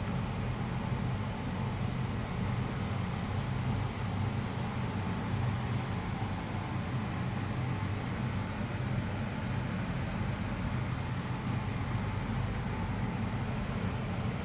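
Steady low hum with a hiss over it, from room ventilation, unchanging throughout with no distinct events.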